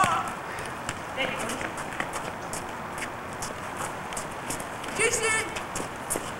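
Footsteps of sneakers running on pavement, heard as scattered light taps over steady background hiss, with a short vocal call just after five seconds in.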